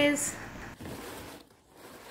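Crisp rustling of freshly starched, dried cotton clothes being handled and turned over by hand, in two short stretches that grow fainter.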